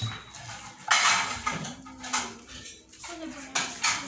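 A metal plate scraping and clattering as a hand scoops food from it, in a few short bursts, the loudest about a second in.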